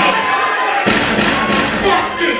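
Live hip-hop show in a club: a voice over the PA mixed with music and crowd noise, loud throughout, with a heavy thump about a second in followed by deep bass.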